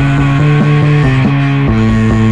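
Rock music with guitar, loud and steady, a line of held notes that changes pitch several times a second.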